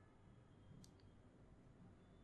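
Near silence broken by two faint, quick clicks close together about a second in, a computer mouse button clicking.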